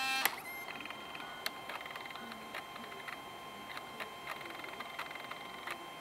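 LS-240 SuperDisk drive in an IBM ThinkPad A31 reading a regular floppy disk. There is a brief buzz at the start, then a faint steady whine with scattered small head-seek clicks. It sounds like a 4x-speed floppy drive.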